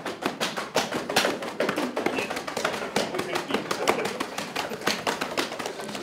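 Many fingertips tapping on people's backs and shoulders through padded camouflage jackets, several pairs at once, making a dense run of quick, irregular taps.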